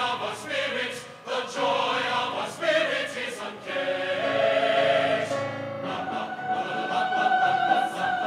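Mixed choir of men's and women's voices singing, the voices settling into a long held chord in the last couple of seconds.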